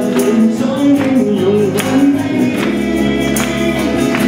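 A live band playing a song: several voices singing together over strummed acoustic guitars and electric bass, with a steady percussive beat a little over two strokes a second.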